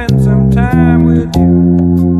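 Electric bass guitar playing a line of held low notes that change about every two-thirds of a second, over music with sharp percussive clicks.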